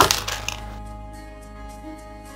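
A few quick clinks in the first half-second, then a ringing that fades slowly, over soft background music.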